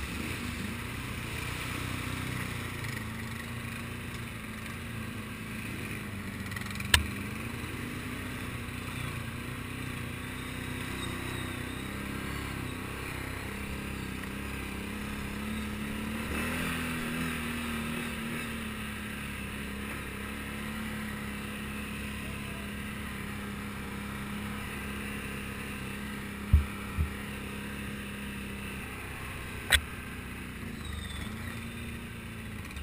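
Can-Am Outlander XMR 1000R ATV's V-twin engine running at a steady, low throttle, its pitch shifting only slightly. A few sharp knocks come through, one about seven seconds in and three near the end.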